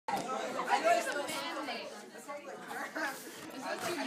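Indistinct chatter of several young people talking in a room.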